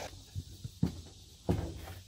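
A few soft footsteps on leaf-littered ground: three short thumps, the last, about one and a half seconds in, the loudest.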